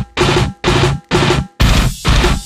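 Death metal band playing a stop-start riff: short, loud hits of distorted guitar, bass and drums about twice a second with silent gaps between. About one and a half seconds in, the band carries on without breaks.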